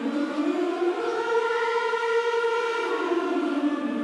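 A large group of singers holding a sustained chord in a warm-up exercise. One voice part slides up in pitch about a second in and glides back down near the end while the rest hold steady.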